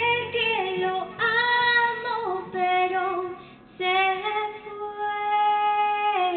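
A woman singing long held notes, each ending in a step down in pitch, with a short break just past the middle.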